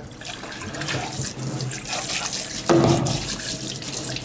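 Water running from a kitchen sink tap, with a brief louder noise a little before three seconds in.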